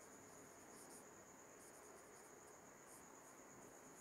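Near silence: faint, scattered strokes of a marker writing on a whiteboard over a steady faint high-pitched whine.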